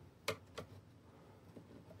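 A few faint, short clicks of small handling noise over a quiet room hiss, two of them in the first second.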